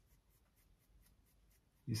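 Small make-up brush blending liquid blush on the cheek: faint, quick, evenly repeated swishes of bristles over skin.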